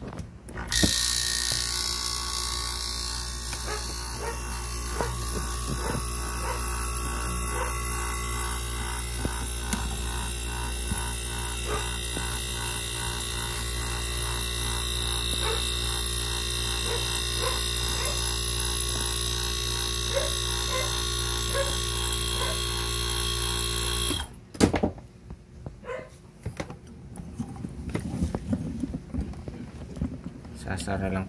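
An electric compressor runs steadily for about 23 seconds, pressurizing an air-conditioner condenser for a leak test, then cuts off suddenly.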